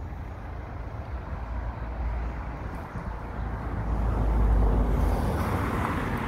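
Street traffic: a vehicle passing, its noise growing louder to a peak about four to five seconds in, over a low rumble.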